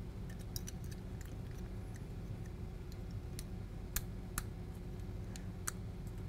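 Scattered light clicks and taps of a plastic fuse holder being handled and pushed into a power entry module, over a steady low background hum.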